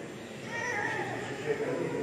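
A baby's short cry, lasting under a second and rising then falling slightly in pitch, over the murmur of a seated crowd chatting.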